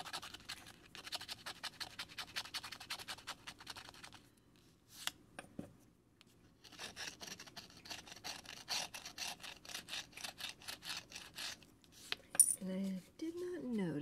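A coin-shaped scratcher scraping the coating off a scratch-off lottery ticket in quick, rapid strokes. The strokes come in two runs of several seconds with a short pause between. Near the end there is a single sharp tap.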